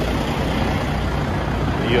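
Diesel semi-truck engines idling: a steady low rumble.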